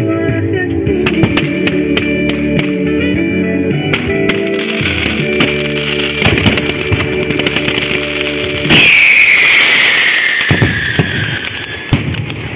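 A song with sharp fireworks cracks and bangs mixed over it. About three-quarters of the way through, the music cuts out to the live fireworks display: a loud hissing rush with one long falling whistle.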